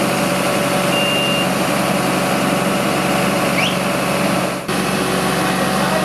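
Fire brigade turntable ladder truck's engine running steadily, with a short high beep about a second in. The sound breaks off briefly about two-thirds of the way through, then carries on.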